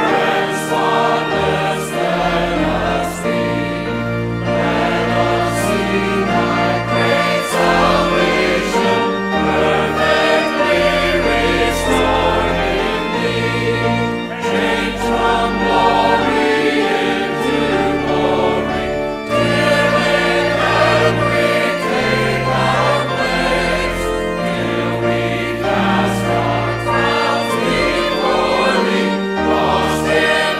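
A church choir singing a hymn in several parts, with keyboard accompaniment under it.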